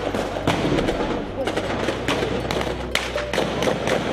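Small-arms gunfire: irregular sharp shots cracking several times a second, mixed with men's voices shouting.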